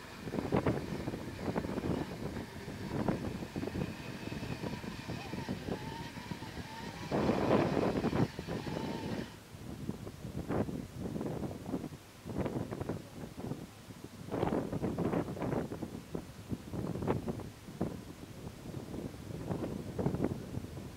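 Modified off-road 4x4's engine revving hard in repeated uneven bursts as it struggles on a muddy slope, loudest about seven to nine seconds in. A faint steady high whine runs beneath it and cuts off suddenly about nine seconds in.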